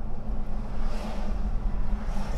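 Car interior noise while driving: a steady low engine and road rumble, with a hiss that swells and fades about halfway through.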